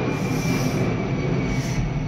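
Airplane flying overhead: a steady rushing rumble with a thin, steady high whine above it.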